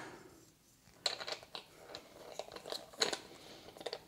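Faint small clicks and scrapes of hands working the plastic Blink Outdoor camera body as its back battery cover is screwed back on. The noises are irregular and start about a second in, with a sharper click a little before three seconds.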